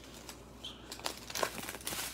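Small plastic bags of diamond-painting resin drills crinkling as they are handled, with scattered light ticks and crackles.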